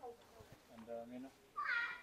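Brief wordless voice sounds: a short low hum about a second in, then a short, high-pitched rising squeal-like sound near the end.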